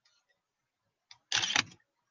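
Nikon DSLR shutter firing once about a second and a half in, a short mechanical clack that takes one stop-motion frame, with a faint click just before it.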